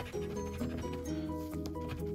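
Background music with held, steady notes, over the faint scratching of a coin across a scratch-off lottery ticket.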